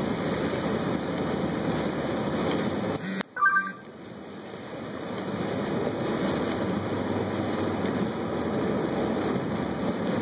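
Steady rushing noise of a car driving on a wet road, heard from inside the car: tyres hissing on the soaked pavement. About three seconds in the sound cuts out briefly, then a short two-note high tone sounds before the road noise fades back in.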